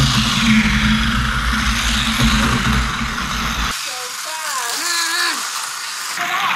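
Motorized toy bullet train running on a plastic roller-coaster track, a steady rattling whir, with a low rumble that stops abruptly about two-thirds through.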